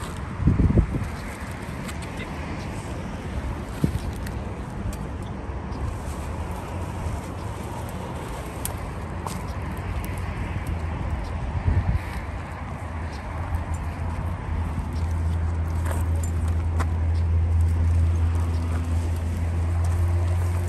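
Highway traffic running steadily, with a heavy vehicle's low engine drone growing louder over the last several seconds. A few light clicks and rustles sound over it.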